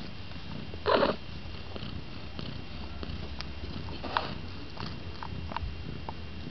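Cat purring close to the microphone, a steady low rumble, with one short louder sound about a second in and a few faint high squeaks.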